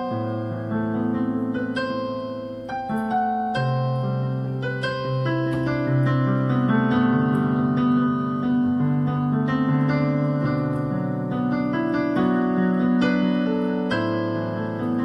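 Electronic keyboard played with a piano voice: long-held low bass notes under chords and a right-hand melody of single struck notes.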